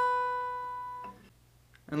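Acoustic guitar, capoed at the fifth fret, sounded once on a fretted D/F# chord shape and left to ring, fading out about a second later.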